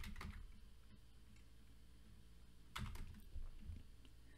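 Quiet keystrokes on a computer keyboard: a couple right at the start, a pause, then a few quick keystrokes about three seconds in.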